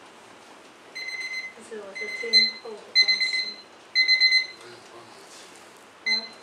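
An electronic alarm beeping: a high beep about once a second, four times, each lasting about half a second, with a short stretch of voice among the beeps.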